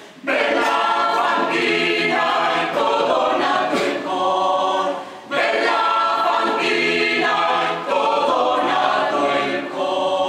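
Mixed choir singing a cappella in several parts, in phrases of sustained chords. The singers come in just after the start and break off briefly about five seconds in before the next phrase.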